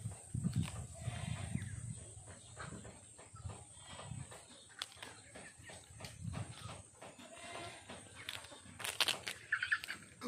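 A young macaque handling and chewing papaya leaves: soft leaf rustling and tearing with scattered light clicks, at a low level.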